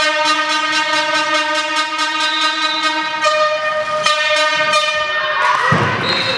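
A fan's air horn sounding one long, steady note with a fast regular pulse in it. Near the end it gives way to crowd cheering and clapping as the penalty is taken.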